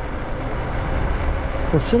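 Wind rushing over the microphone and tyre noise from an electric bike riding at about 20 mph. The sound is a steady, deep rumble with no clear pitch. A man's voice comes in near the end.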